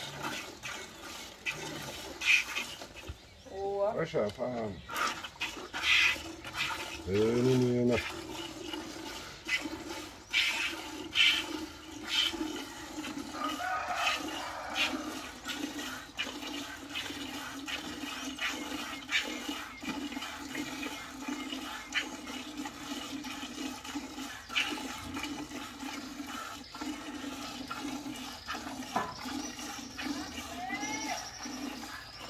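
Cow being hand-milked: repeated squirts of milk hitting the pail in quick, uneven strokes. Cattle call twice a few seconds in, and a steady low hum sits underneath from about eight seconds on.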